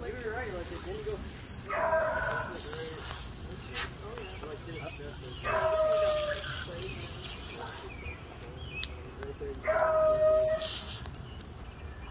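A dog whining and crying: three drawn-out cries about two, six and ten seconds in, with a wavering whine between them. Underneath, the steady hiss of a garden-hose spray nozzle.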